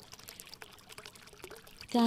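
Faint, steady trickling of running water, a background water track, with small irregular splashes and no voice.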